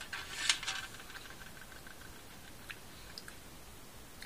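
Faint mouth sounds of a person chewing a jelly bean: a short breathy burst about half a second in, then a few soft clicks.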